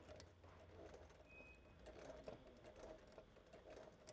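Near silence, with a faint low hum and scattered soft ticks from a sewing machine stitching slowly over zipper teeth through a scrap of vinyl.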